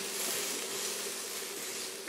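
Chopped onion, garlic and ginger frying in oil in a stainless steel pan: a steady, quiet sizzle while a silicone spatula stirs them.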